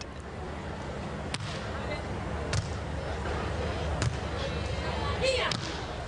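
Volleyball rally: four sharp hand-on-ball hits one to two seconds apart, over a steady crowd murmur.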